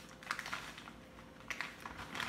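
Plastic packet of dried spaghetti handled and slid across a granite countertop: a few faint clicks and crinkling rustles, the sharpest about a third of a second in and again near the end.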